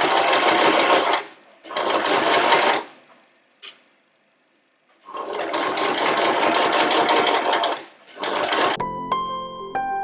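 Janome domestic sewing machine stitching through layered cotton fabric in stop-start runs: about a second, a short pause, another second, a lull around four seconds in, then a longer run of about three seconds and a brief final burst. Soft piano music comes in near the end.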